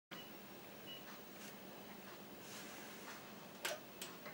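Quiet room tone with a faint hiss, then one short sharp click about three and a half seconds in: the power push-button on an Onkyo Integra A-8650 amplifier being pressed.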